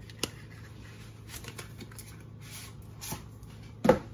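Light rustles and clicks of a cardboard butter box and a butter stick being handled, with one loud knock just before the end.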